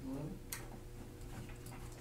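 Quiet classroom room tone with a steady electrical hum. A brief voice sound comes right at the start, then a single sharp click about half a second in and a few faint ticks.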